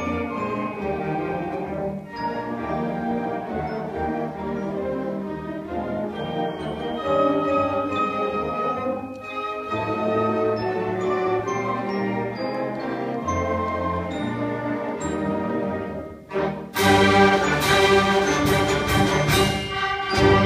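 Advanced school concert band of woodwinds, brass and percussion playing a piece with held chords. About four seconds from the end, after a brief drop, the full band comes in louder with sharp percussion strikes.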